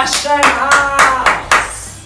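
Hands clapping sharply about six times in quick succession, stopping about a second and a half in, with an excited voice calling out between the claps.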